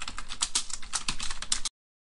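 Rapid computer-keyboard typing, a run of quick key clicks added as a sound effect, cut off abruptly a little over a second and a half in.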